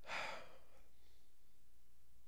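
A man's short audible sigh, a breathy exhale lasting about half a second, then quiet room tone with a faint low hum.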